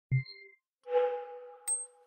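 Electronic logo sting: a short knock with a brief high ding, then about a second in a bell-like chime of two tones that rings on and slowly fades, with a small high click and ping near the end.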